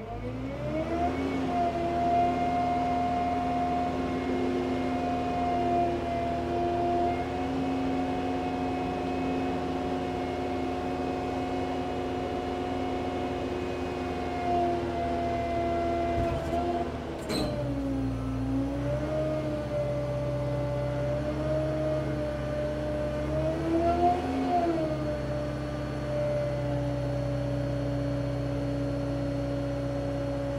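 SkyTrak 8042 telehandler's diesel engine revving up from idle at the start and running at raised revs to power the hydraulics as the boom lifts and extends. Its pitch drops and shifts about two-thirds of the way through, with a sharp click, swells briefly a few seconds later, then holds steady.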